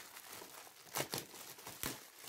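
Clear plastic packaging crinkling and tearing as it is pulled off an office chair's mesh backrest, with two sharper, louder crackles about a second in and near the end.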